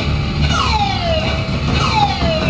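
Live band playing: a high note slides steeply downward twice, over low bass notes.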